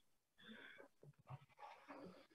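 Near silence, broken only by a few faint, short, indistinct sounds.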